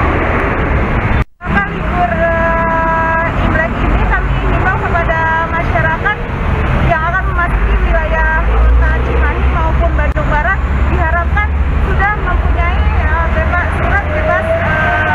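A woman speaking, with a steady low rumble of road traffic underneath. The sound cuts out for a moment about a second in.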